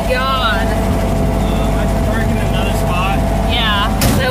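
Lifted VW Baja Bug driven off-road, heard from inside the cabin: its engine running steadily under load with road noise, and voices over it now and then.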